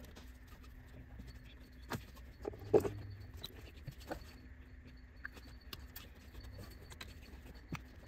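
Faint scattered clicks and knocks of hands working a spark plug wire and an inline spark tester in an engine bay, with the loudest knock about three seconds in.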